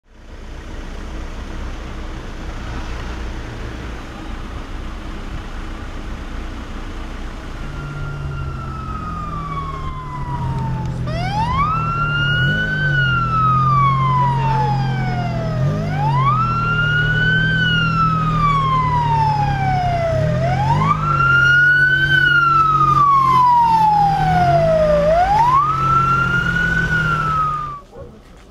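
Ambulance siren wailing in slow cycles, each a quick rise followed by a long falling glide, about every four to five seconds, starting about eight seconds in. Under it runs the steady hum of vehicle engines in stalled traffic.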